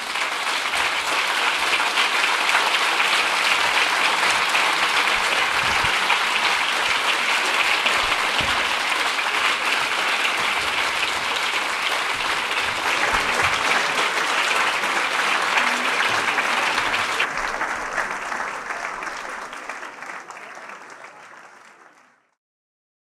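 Audience applauding in a long, steady round of clapping that fades away over the last few seconds.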